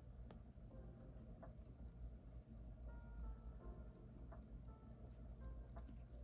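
Faint, soft background music with a few short held notes. A gel pen gives a few light ticks on the planner page.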